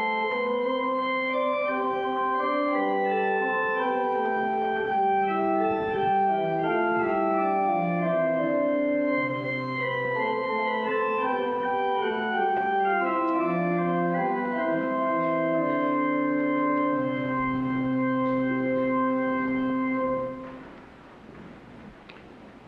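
Organ playing slow, sustained chords that change every second or two, closing on a long held chord that stops about twenty seconds in.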